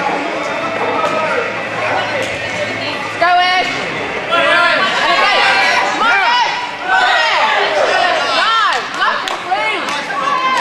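Crowd chatter in a hall, then from about three seconds in, several voices shouting over one another at a junior karate sparring bout, their pitch rising and falling.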